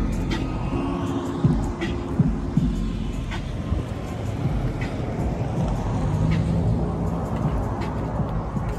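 Steady low rumble of vehicles with music playing in the background, and a few sharp clicks.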